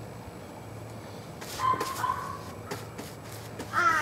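A crow cawing near the end, with harsh falling calls over faint outdoor background. A shorter held animal call comes about halfway through.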